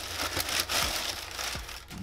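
Tissue paper crinkling and rustling as a sneaker is pulled out of its paper wrapping in a shoebox, with irregular crackles throughout.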